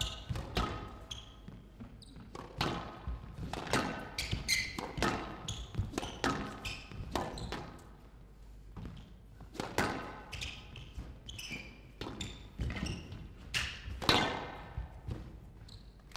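Squash rally: the ball struck by rackets and rebounding off the court walls in irregular sharp knocks, about one or two a second, each with a short ringing echo, with players' shoes squeaking on the court floor between shots.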